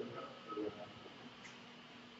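Quiet classroom room tone with a faint steady hum and a brief faint murmur about half a second in.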